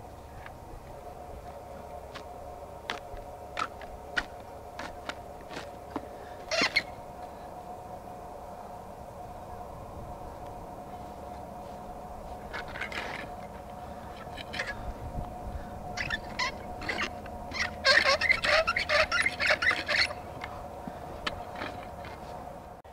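Manual half-moon lawn edger cutting grass along a concrete edge: a string of short sharp scrapes and chops, thickest near the end, over a faint steady hum.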